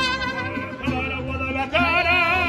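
Live mariachi band playing, with violins, a trumpet and a steady strummed rhythm over a deep bass pulse. Near the end a loud held note with wide vibrato comes in.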